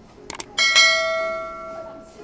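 Two quick clicks, then a bright bell-like chime that rings out and fades over about a second and a half, with soft background music underneath.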